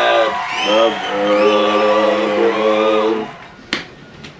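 A short burst of music with voices: a rising, bending phrase, then one note held for about two seconds, cutting off a little after three seconds in. A single sharp click follows near the end.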